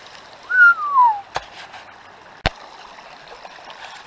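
Steady rush of a shallow river flowing over rocks around a sluice box. A single loud whistle-like note falls in pitch about half a second in, and two sharp clicks follow about a second apart.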